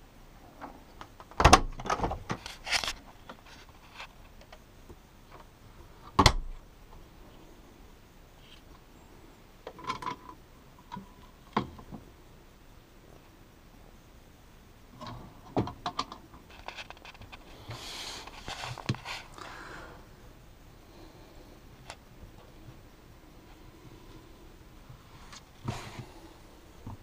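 Refrigerator and cabinet doors being handled, opened and shut. Scattered knocks and thuds, the loudest about a second and a half in and again about six seconds in, with a stretch of rustling and rattling around eighteen seconds.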